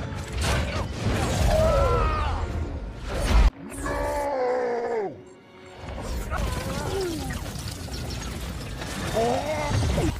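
Film fight soundtrack: mechanical whirring and metal clanks and hits from a powered armour suit grappling, mixed with strained yells and shouted lines over the score. The loudest hit comes about three and a half seconds in and cuts off suddenly.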